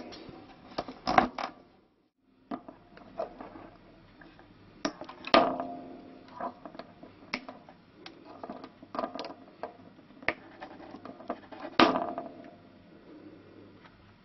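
Handling noise at a lyre's tailpiece and its lightly tensioned strings: scattered knocks and rubs, with two louder knocks about five and twelve seconds in that ring briefly.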